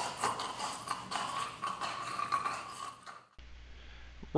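A scuffle around an office chair at a computer cubicle during a mock choking: irregular knocks and clatter over a thin, steady high squeak. It cuts off suddenly shortly before the end, leaving a low hum.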